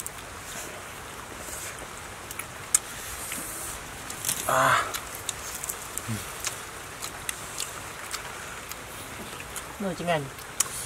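Scattered small clicks and rustles of hands handling herbs, leaves and raw meat and of people eating, with a brief voice about halfway through and another starting at the very end.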